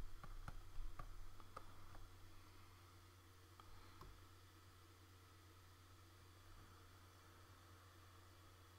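Near silence: room tone with a steady low hum and a few faint clicks, mostly in the first two seconds and once more about four seconds in.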